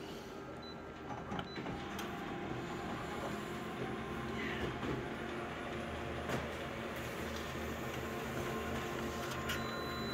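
Office multifunction copier making a colour copy: a steady mechanical hum with a few light clicks.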